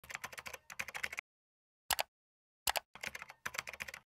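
Typing on a computer keyboard: a quick run of key clicks, then a pause broken by two louder single keystrokes, then another quick run of clicks.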